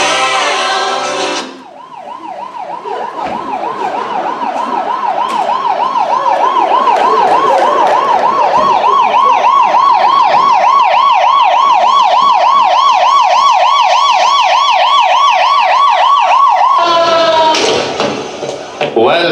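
Emergency-vehicle siren in a fast yelp, its pitch rising and falling three to four times a second. It grows louder over several seconds as if approaching, holds steady, then cuts off near the end.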